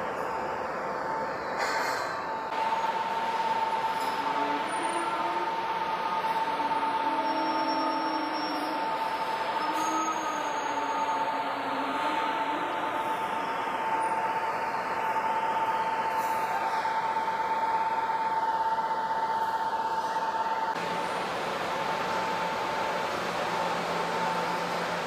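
Steady machinery rumble and hiss on a ship's vehicle deck, with a constant high whine that fades near the end, as armoured vehicles are driven off.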